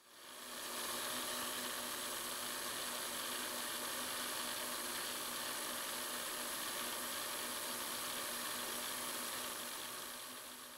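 Taurus ring saw running, its water-cooled diamond ring blade grinding through a piece of glass: a steady hiss with a faint low hum underneath. The sound fades in over the first second and starts to fade near the end.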